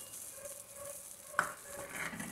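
Tomato and onion frying faintly in oil in a stainless steel pot as raw eggs are poured in, with a single light knock a little after a second in.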